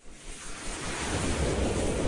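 Whoosh sound effect of an animated logo intro: a rush of noise that swells up from quiet over the first half second and holds steady, with a rising sweep beginning near the end.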